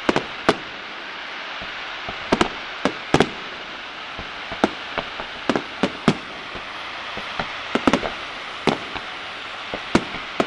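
Aerial fireworks bursting overhead: more than a dozen sharp bangs at irregular intervals, some in quick pairs or clusters, over a steady hiss.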